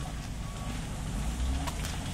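Steady low rumble of road traffic with footsteps on a wet paved path. A faint short beep comes about half a second in.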